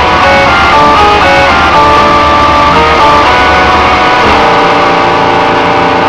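Electric guitar playing a deathcore riff, with a stepping high melodic line over heavy bass and drums. About four seconds in the low end drops away, leaving a held chord.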